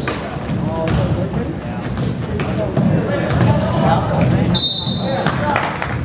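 Basketball game sounds in a gym: sneakers squeaking on the hardwood, a ball bouncing, and players and spectators calling out.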